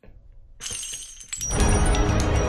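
A glass-shattering sound effect about half a second in, with high ringing tones trailing on. It is followed about a second and a half in by music with a deep bass.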